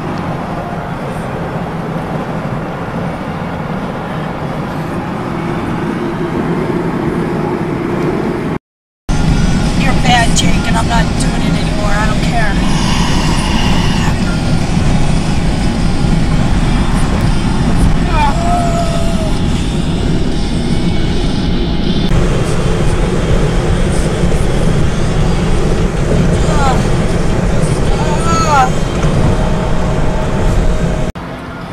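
Steady road and engine rumble heard from inside a vehicle's cabin at highway speed. The sound cuts out briefly about nine seconds in and comes back louder.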